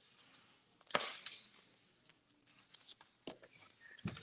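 A quiet room with one sharp knock about a second in, followed by a few faint clicks.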